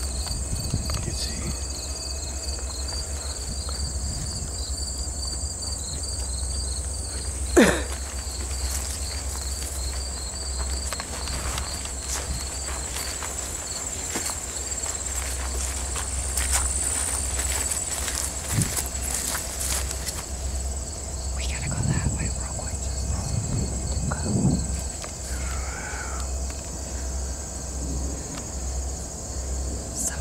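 Summer insects chirping in an even pulsed rhythm of several chirps a second over a steady high buzz, with rustling and light footsteps through grass and brush. About eight seconds in comes a single sharp, loud sound that drops quickly in pitch.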